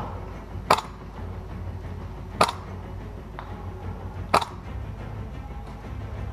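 Three sharp airsoft gun shots, about two seconds apart, with a fainter click between the second and third, over background music.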